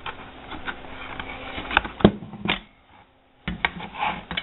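Handling noise of aluminium tubing on a desk: low rustling with a few sharp clicks and taps about two seconds in, then after a brief near-silent gap, three quick clicks near the end.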